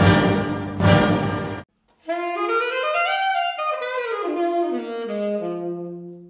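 Intro music: two loud ensemble chord hits, then after a short gap a solo saxophone phrase of stepped notes that climbs, falls back down and settles on a held low note.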